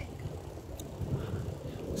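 Low, steady rumble of wind buffeting a handheld phone's microphone while riding a bicycle.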